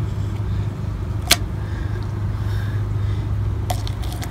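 Steady low background hum, with one sharp click about a second in and two quick clicks near the end.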